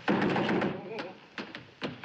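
Knocking on a door: a loud burst with a muffled voice, then three sharp knocks about half a second apart.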